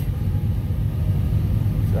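Truck engine idling, a steady low rumble heard from inside the cab.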